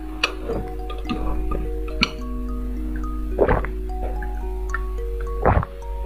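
Soft background melody of held notes, with two louder sips or gulps of a jelly drink through a straw, about three and a half and five and a half seconds in, and a few faint clicks of the straw and glass before them.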